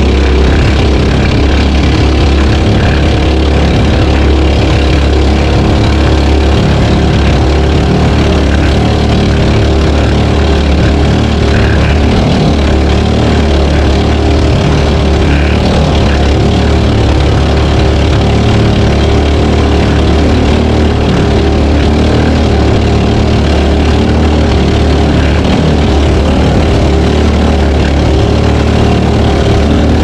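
A small racing outrigger boat's engine running steadily at speed, loud and unbroken, with no change in pitch.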